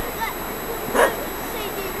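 Outdoor background with steady hiss and short chirping calls, and one brief, sharp animal-like call about a second in.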